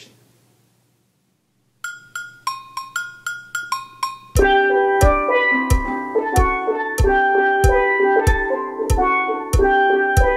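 Steel pan struck with mallets, playing single ringing notes of a melody about three a second, starting about two seconds in. From about four seconds in, a steady bass-drum beat and sustained chords join it while the pan keeps playing.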